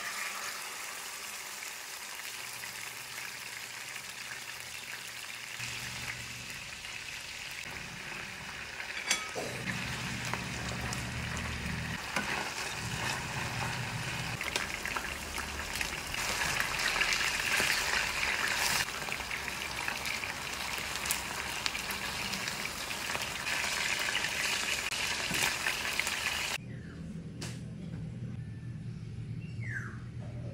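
Marinated chicken pieces sizzling as they fry in hot oil in a pan, a steady sizzle that is loudest toward the middle. It stops abruptly a few seconds before the end, leaving a low hum.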